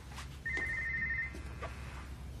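Mobile phone's electronic ringtone: a short high trill that starts about half a second in and stops under a second later, with faint clicks of handling around it.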